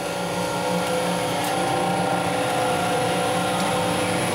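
Small Vincent screw press running steadily under its variable-frequency drive while frac-drilling cuttings feed into it: an even machine hum with several held tones over a hiss.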